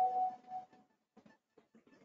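A held tone of two steady pitches fades out within the first second, followed by faint, scattered short noises.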